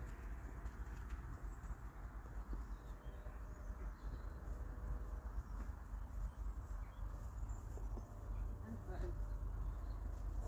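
A cob pony walking on grass, its hooves and the handler's footsteps making soft steps, over a steady low rumble.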